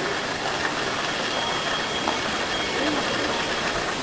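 Steady, even rushing background noise with no distinct sounds in it, and a faint high steady whine under it.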